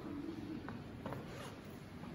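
A few soft footsteps and a rustle of clothing, faint over room noise, as a person walks to a piano bench and sits down.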